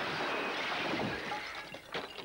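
A large glass shop window shattering as a man is thrown through it, followed by a long shower of breaking and falling glass that fades near the end.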